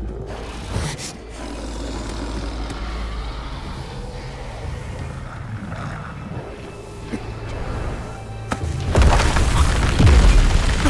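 Soundtrack of an animated fantasy fight: background music under monster sound effects, a low rumble with a few booms, which turns suddenly much louder about nine seconds in.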